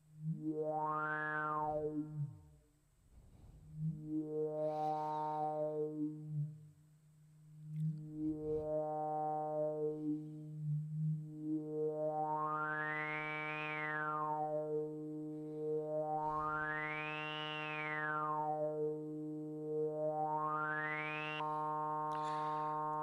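Four-pole CEM3320 voltage-controlled lowpass filter (PM Foundations 3320 VCF) with resonance turned up, processing a steady synth oscillator tone. Its cutoff sweeps slowly up and down about six times, giving a vocal 'wow' sound. The early sweeps close the filter until the tone almost vanishes, and the later ones open higher and brighter.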